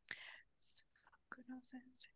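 Faint whispered speech: a few soft, breathy syllables spoken under the breath.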